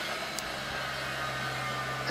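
A steady low hum under an even hiss, with one faint click about half a second in.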